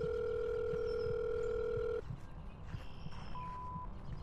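Telephone ringback tone: one steady ring lasting two seconds, then about a second later a short, higher beep, the tone that starts a voicemail recording.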